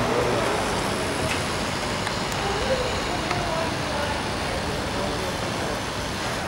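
Steady street traffic noise, cars passing, with faint voices of people nearby.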